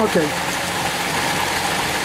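Steady rush of water pouring from stone fountain spouts into the basin, with a low steady hum underneath.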